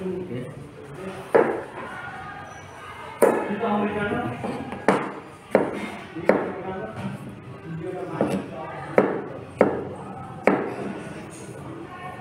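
Chef's knife cutting a peeled potato on a plastic cutting board: about nine sharp knocks of the blade hitting the board, irregularly spaced, roughly one a second.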